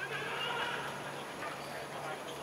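A player's drawn-out, high-pitched shout across the football pitch, lasting about a second, over a steady background hiss.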